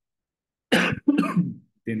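A man coughing and clearing his throat about two-thirds of a second in, heard over a video call, just before he speaks again.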